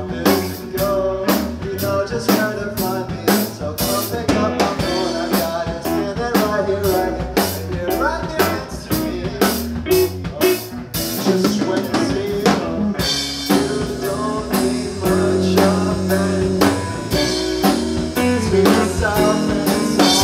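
A live band with a drum kit, bass and guitar plays a steady groove, the drum strokes prominent. About thirteen seconds in, the cymbals become heavier and busier.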